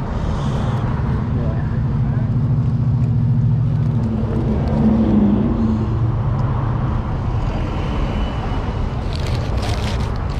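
A steady low engine hum with street traffic, from a parked truck or passing cars. Close crinkling of paper wrappers comes about nine seconds in.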